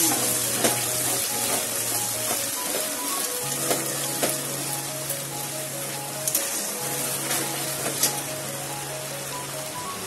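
Oil sizzling steadily as a spice paste fries in an aluminium kadai, stirred with a metal spatula that knocks against the pan now and then. Soft background music plays throughout.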